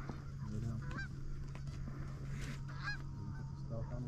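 Geese honking: a few short, scattered honks, over a steady low hum.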